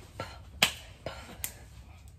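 Three sharp finger snaps, unevenly spaced, made during a dance; the second, about half a second in, is the loudest.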